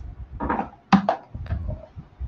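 A strip of white masking tape being pulled off its roll and torn, with a few short, sharp crackles about a second in.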